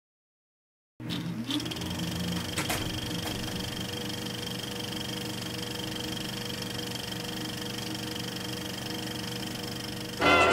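Film projector starting up about a second in, its pitch rising briefly as it gets up to speed, then running steadily, with a single click a couple of seconds in.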